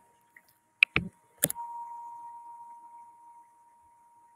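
Three quick sharp taps about a second in, the last one followed by a clear ringing tone that fades away over about two seconds.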